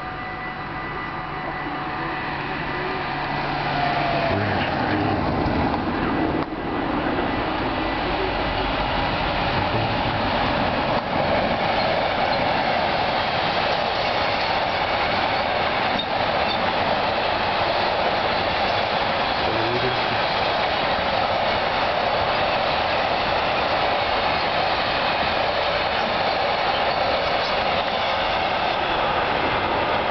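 A level-crossing warning signal's steady tones at first. From about four seconds in, a freight train passes close by: the long, even rolling of its wagons on the rails, loud and unbroken for the rest.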